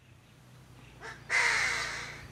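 A bird calling: a brief faint note about a second in, then one loud, harsh call lasting under a second.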